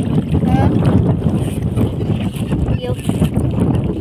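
Wind buffeting the microphone in a loud, uneven low rumble over open water, with a man's voice saying a word twice.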